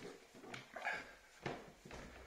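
Faint footsteps climbing a staircase, about two steps a second.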